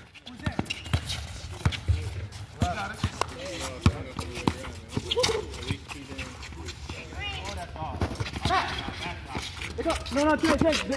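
A basketball being dribbled and bounced on an outdoor hard court: irregular sharp thuds, along with players' footsteps and distant shouting voices.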